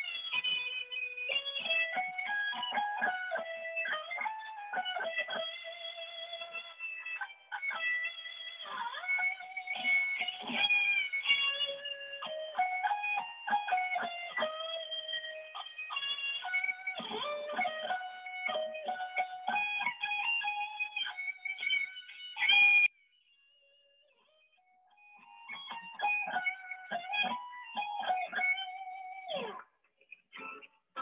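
Solid-body electric guitar playing a continuous melodic passage of picked notes, heard through a video call with the highs cut off. It breaks off for about two seconds near the end, then plays briefly again and stops.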